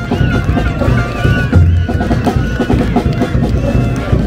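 Rhythmic band drumming: snare drums beating quickly with a few bass drum booms underneath and some short high held notes over the top.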